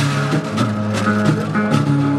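Live Malian hunters' music: a donso ngoni (hunter's harp) plucked in a repeating low pattern, with sharp regular strikes about three a second.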